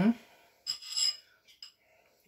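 A small ceramic bowl clinks once about a second in as it is picked up from the counter, with a brief high ringing, followed by a couple of faint clicks.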